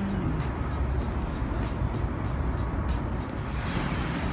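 Traffic on a busy city street, a steady roar of passing cars, with music playing over it with a regular beat.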